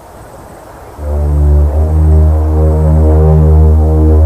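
Eerie film-score music: low, sustained droning tones, quiet for the first second and then coming back in loud and holding steady.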